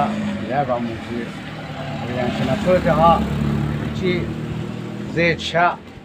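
A man talking in short phrases over a motor vehicle's engine running close by, its low hum growing louder through the middle and then fading.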